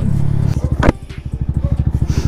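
Yamaha MT-125's single-cylinder four-stroke engine, fitted with an Akrapovič titanium exhaust, running steadily under way, then from about half a second in idling with an even, rapid putter. A single sharp click sounds just before one second.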